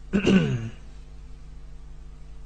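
A man clears his throat once, briefly, into a handheld microphone, the sound dropping in pitch. A steady low hum runs underneath.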